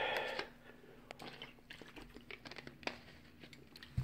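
Thin plastic water bottle crinkling as a man drinks from it during the first half-second, followed by faint scattered small clicks of handling.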